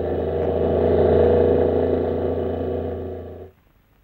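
Car driving past, its engine sound swelling to its loudest about a second in, then fading and cutting off abruptly near the end.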